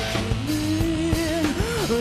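Live rock band playing a driving distorted bass riff with drum kit, and a male voice singing long, bending notes over it.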